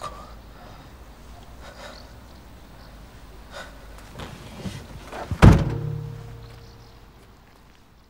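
A car's boot lid slammed shut: one loud heavy thunk about five and a half seconds in, followed by a low ringing tail that fades away. A few faint knocks and a low steady rumble come before it.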